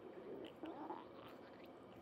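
An orange tabby cat grooming its fur, with faint wet licking clicks. About half a second in comes a short rising tone, the loudest sound here.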